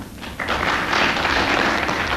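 Studio audience breaking into applause about half a second in, an even clatter of many hands clapping, heard on an archive radio recording.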